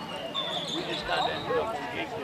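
Indistinct chatter of people talking close by, with a brief thin high tone about half a second in.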